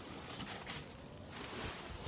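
A tightly wedged plastic-bag block, packed with shredded Styrofoam, being pulled up out of a wooden compression box. Its plastic wrapping rustles quietly and scrapes against the wood.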